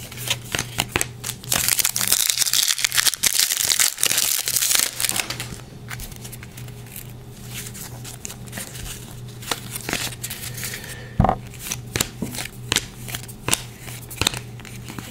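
Hockey trading cards being handled and flipped, with many short clicks and slides of card stock. From about one and a half to five seconds in there is a denser crinkling, typical of a pack wrapper being worked open. A low steady hum sits underneath.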